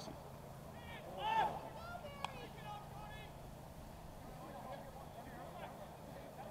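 Faint shouts and calls of rugby players across the pitch over a low outdoor background, with one sharp click a little over two seconds in.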